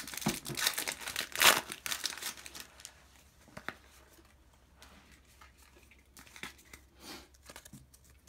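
Plastic foil wrapper of a Pokémon trading-card booster pack (Phantom Forces) being torn open and crinkled, loudest in the first couple of seconds, then dying down to a few faint rustles near the end.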